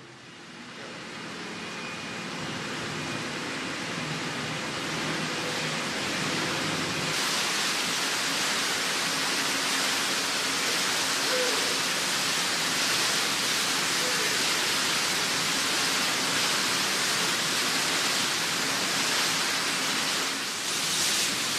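Steady rushing of wind and churning sea water at a ship's side, swelling over the first few seconds and turning hissier about seven seconds in. A faint machine hum sits under it at first.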